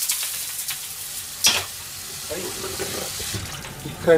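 Hot, scorched wok hissing and sizzling as water is poured onto it, the hiss dying away near the end. A single sharp metal clank comes about a second and a half in.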